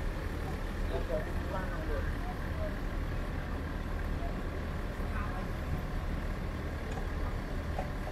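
Busy street ambience: faint, scattered voices of a crowd over a steady low rumble.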